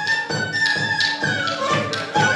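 Moldavian folk dance music: a flute (furulya) melody with long held notes over a steady drum beat of about three to four strokes a second.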